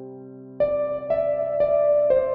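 Slow, gentle solo piano music. A held chord fades away, then new notes are struck about every half second from just over half a second in.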